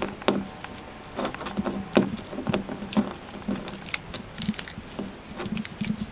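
Scattered light taps and clicks, irregular and close, over a faint steady low hum.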